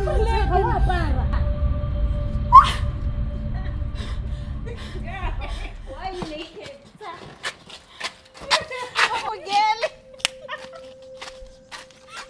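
Women's voices talking and exclaiming, probably not in English since nothing was transcribed, with one short, loud, rising cry about two and a half seconds in. A low rumble underneath fades out about six seconds in.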